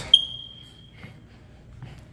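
A single sharp, high-pitched ping a moment in, its tone fading out over most of a second.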